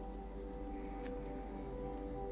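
Faint scratching of a pen writing on paper, a few light strokes, under soft background music with sustained tones.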